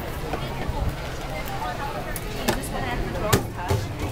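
Outdoor crowd ambience: faint voices of passers-by over a low rumble, with a few sharp clicks, the clearest about two and a half and three and a half seconds in.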